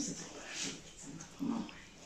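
Quiet rustling of a lightweight dress being pulled on over a small child's head, with two short, low vocal sounds from the child, one at the start and one about a second and a half in.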